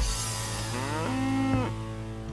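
A cow mooing once: one long call that rises in pitch, holds, then stops, just after a short whoosh.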